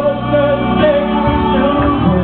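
Gospel choir of men's and women's voices singing together through a sound system, held sustained notes.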